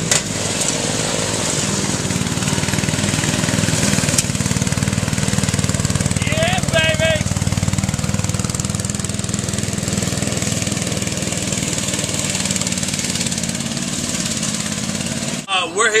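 Small engine of a homemade ride-on lawnmower running steadily, with a brief voice faintly heard about six and a half seconds in. The engine sound cuts off abruptly near the end.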